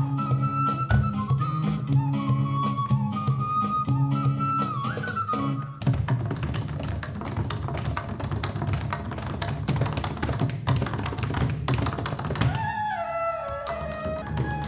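Music with a pitched melody over a bass line that breaks off about six seconds in for a long run of rapid, dense tapping from dancers' footwork on the stage, the melody coming back near the end.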